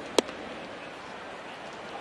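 One sharp pop of a baseball smacking into the catcher's leather mitt about a quarter of a second in, a pitch taken for ball three, over steady ballpark crowd noise.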